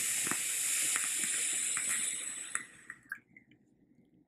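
Long draw on a rebuildable dripping atomizer fitted with clapton coils: a steady hiss of air through the airflow with the coils sizzling and crackling as they vaporise e-liquid, lasting about three seconds and ending with a few last pops.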